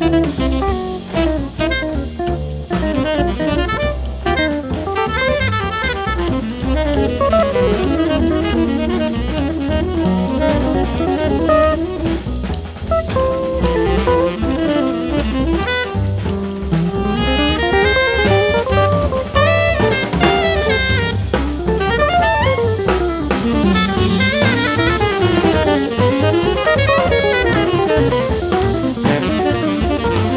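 Modern jazz group playing, with a busy drum kit under fast melodic runs that climb and fall again and again.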